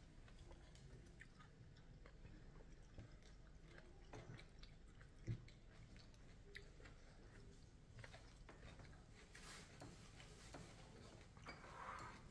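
Near silence with faint mouth sounds of a person chewing food, and one short soft knock about five seconds in.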